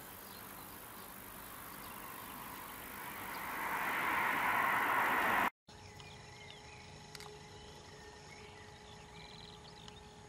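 A passing vehicle's noise swells steadily louder, then is cut off abruptly about halfway through by an edit. A quieter outdoor ambience with faint scattered chirps follows.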